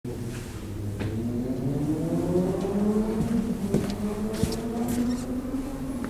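A motor or engine hum whose pitch rises slowly over the first few seconds and then holds steady. A few clicks and knocks come in the second half.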